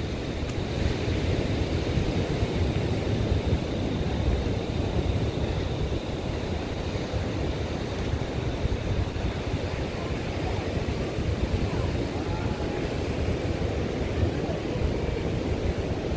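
Steady wind buffeting the microphone over the wash of ocean surf breaking on the beach.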